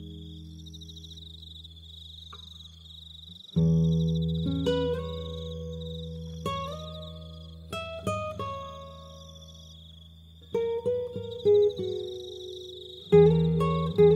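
Slow fingerpicked acoustic guitar: low bass notes ring on under single plucked notes and chords, with a quick run of notes about three-quarters of the way through and a strong chord near the end. Behind it, crickets chirp in a steady high pulsing trill.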